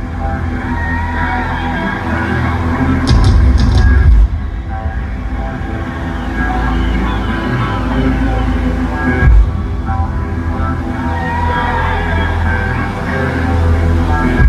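Loud music with deep, heavy bass played through a concert sound system, recorded from the audience, with stronger bass hits about three seconds in and again past the middle.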